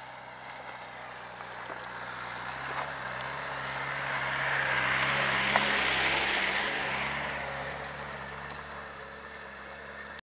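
Land Rover Discovery driving slowly past on a wet, stony track. Engine and tyre noise grow louder as it approaches, are loudest as it passes about five to six seconds in, then fade as it pulls away. There is a single sharp click at the closest point.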